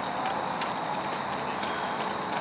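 Hoofbeats of a chestnut Saddlebred mare moving at a fast gait over packed dirt and gravel: a run of faint, uneven thuds over a steady outdoor hiss.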